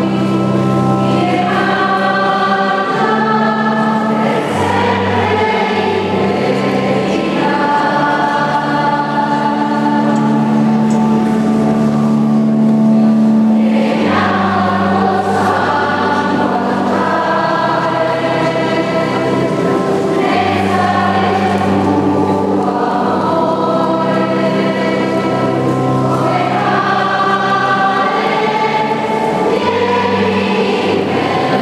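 A choir singing a slow hymn in long held phrases over sustained low accompaniment notes that change every few seconds.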